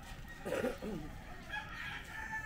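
A rooster crowing, loudest about half a second in.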